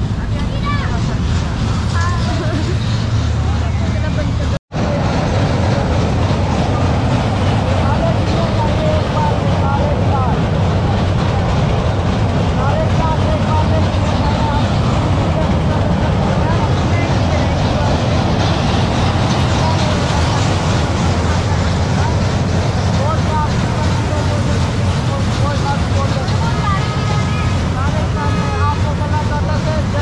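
Fairground crowd chatter, many overlapping voices over a steady low rumble, with one brief total cut-out of the sound about four and a half seconds in.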